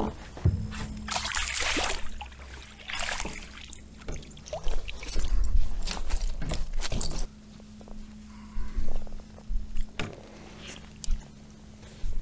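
Water splashing and net and tackle rattling as a hooked smallmouth bass is landed in a landing net beside a kayak and handled, in irregular bursts that are busiest in the first half, over a steady low hum.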